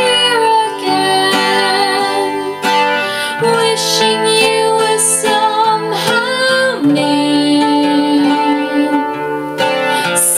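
A woman singing a ballad in long held notes, accompanied by an acoustic guitar.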